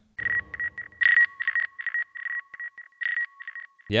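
A run of electronic beeps of uneven length, about a dozen, on one steady high tone with a fainter lower tone under it, stopping just before speech resumes.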